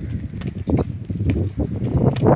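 Boots of a few marching soldiers striking brick paving: a quick, uneven run of stamping footfalls.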